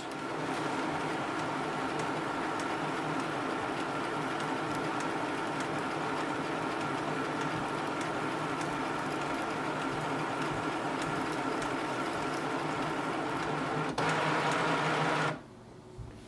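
HP DeskJet 3755 all-in-one feeding a sheet through its scanner during a scan: a steady motor whirr with several steady tones. About fourteen seconds in the sound changes and grows slightly louder, then stops short a second and a half before the end as the page is released.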